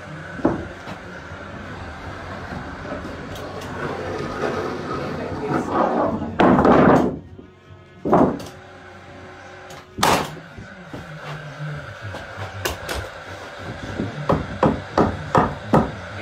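Cordless nail gun driving nails into timber stud framing: single sharp shots a few seconds apart, a louder, longer burst just past the middle, and a quick run of knocks near the end.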